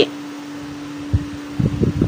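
Steady low hum and hiss of a running fan, with a few soft handling thumps about a second in and again near the end as a paper leaflet is held and moved.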